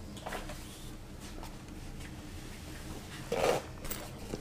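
Quiet room tone with a steady low hum and a few faint rustles. A little over three seconds in, a louder short burst of rustling handling noise, as a man sits back down at the desk with a fabric tripod carrying bag.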